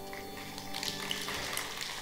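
A live pit orchestra's held chord dies away, and audience clapping starts up about a second in.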